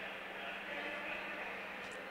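Pause in the talk: faint steady background noise with a low, even hum and no distinct events.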